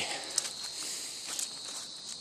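Footsteps of a person walking, with two sharper steps about a second apart, over a steady high-pitched drone of insects.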